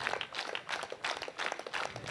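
Newspaper pages rustling and crinkling as they are turned and handled quickly, an irregular run of small crackles.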